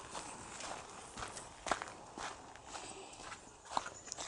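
A handful of quiet footsteps on dry grass and bare dirt.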